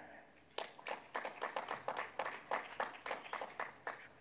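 Scattered hand clapping from a few people in a hall, the claps distinct and irregular, several a second, starting about half a second in.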